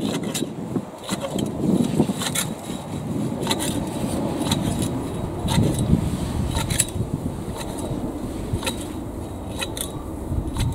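Long-handled Qualcast edging shears cutting a lawn edge: the steel blades snip shut over and over, a crisp metallic click about once a second, with a light rustle of cut grass.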